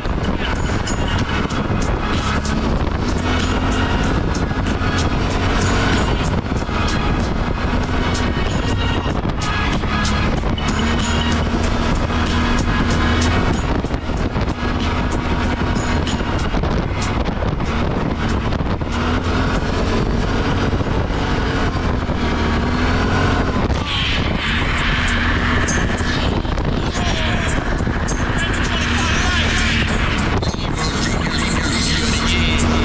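ATV engine running under changing throttle, its pitch rising and falling, while rap music with vocals plays from a handlebar-mounted Aukey Bluetooth speaker.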